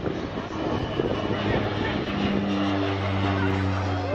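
A low, steady engine drone sets in about halfway through, over background voices and field noise.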